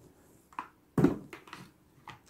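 Quiet handling noises from the plastic electric spray gun being moved and set down, with a soft knock about a second in.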